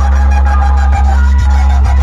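A large stacked-loudspeaker DJ sound system playing electronic music at very high volume during a sound check. It is dominated by a deep, steady bass that does not let up.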